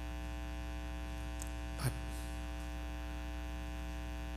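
Steady electrical mains hum with many overtones, a low buzz carried through the sound system, broken only by one short spoken word about two seconds in.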